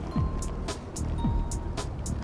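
Background music with a steady drum beat: regular kick-drum and high percussion hits, with the held chords thinned out through this stretch.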